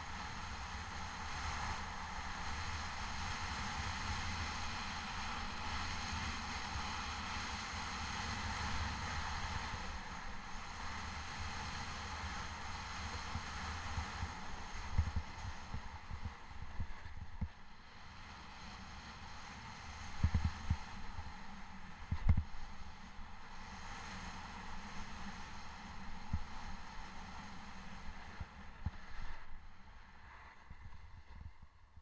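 Snowboard base sliding and scraping over packed snow, a steady hiss that is strongest in the first third, with wind rumbling on the microphone. Several low thumps in the second half as the board goes over bumps.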